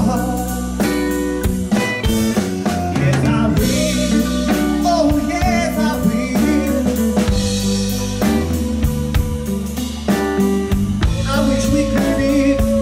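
A live soul-blues band playing: drum kit, bass guitar, electric guitar and keyboards, with a male lead singer's vocal line bending over them.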